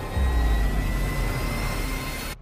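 Cinematic trailer sound design: a deep rumble that swells in just after the start, with a thin high tone slowly rising in pitch, over a music bed.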